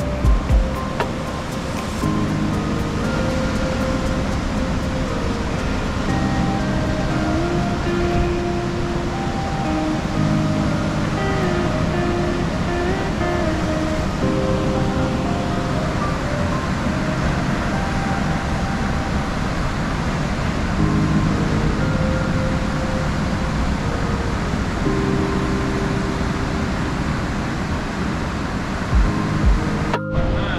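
Background music of held chords and a slow melody, laid over the steady rush of surf breaking on a rocky shore.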